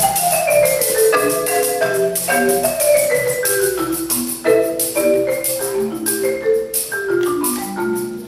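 Marimba played with mallets in fast cascading runs that fall from high notes to low, again and again, with a tambourine jingling in time.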